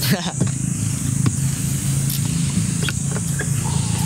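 Street ambience: a motor vehicle running, with indistinct voices and a few faint ticks.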